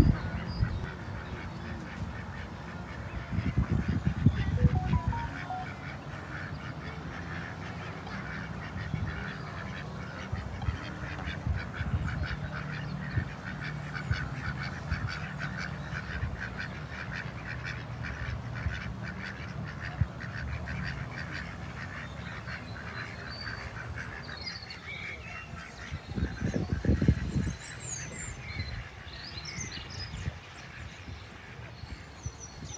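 Ducks and other waterfowl calling over and over, a busy run of quacks and honks. Two louder low rumbles come about four seconds in and near the end.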